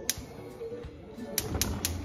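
Gas stove burner's spark igniter clicking as the knob is turned and the burner lights: one click just after the start, then three in quick succession in the second half, over background music.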